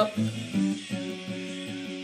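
Steel-string acoustic guitar strummed hard and fast: chords ring at first, then from about a second in it settles into quick, even strokes on one repeated chord.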